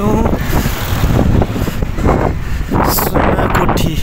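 Wind buffeting the microphone of a camera carried on a moving bicycle: a loud, steady low rumble, with street traffic underneath.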